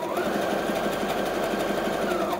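Brother PS300T computerized sewing machine stitching a close zigzag: a motor whine with a rapid patter of needle strokes. The pitch steps up a moment in as the machine speeds up, then holds steady.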